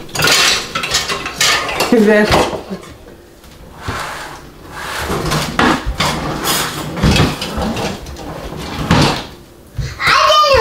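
Kitchen clatter: pots, pans and utensils being picked up, moved and knocked together at a stove and counter by a child searching for something. A child's voice speaks briefly about two seconds in.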